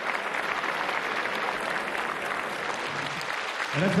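Audience applauding steadily after a fighter is introduced in the ring.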